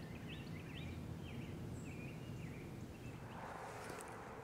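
Faint outdoor ambience in the woods: a small bird calling a quick run of short, high chirps through the first two and a half seconds, over a steady low rumble.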